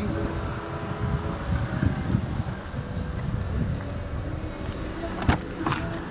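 Low, uneven rumble of handling and outdoor noise. Near the end come two sharp clicks a moment apart as the rear side door of a 2012 Perodua Alza is unlatched and opened.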